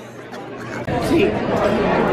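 Indistinct talking and chatter, quieter at first, with voices picking up about a second in.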